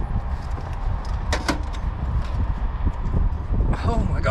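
A heavy vintage mechanical cash register being lifted out of a metal-framed pull-along trolley: a few short knocks and clunks, over a steady low rumble.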